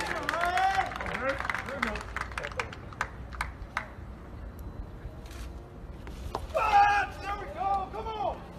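People's voices talking near the throwing circle, with a few sharp clicks in the first half and louder voices about six and a half seconds in.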